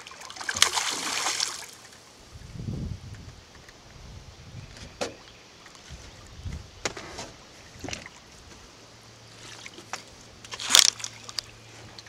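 A snagged paddlefish (spoonbill) thrashing at the water's surface: a burst of splashing about half a second in, then scattered smaller splashes, dull thuds and knocks, and one sharp splash near the end.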